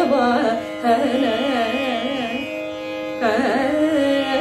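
A woman singing a Carnatic melodic phrase with constant wavering ornaments (gamakas), over a steady drone. She pauses briefly a little before three seconds in, then goes on.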